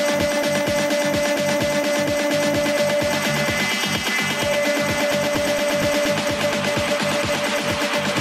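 Electronic dance music from a DJ mix: a steady, driving beat under a held synth note that drops out briefly in the middle.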